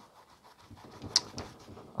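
Faint scratchy rubbing of a paintbrush working oil paint onto canvas, with a few short sharper strokes about a second in.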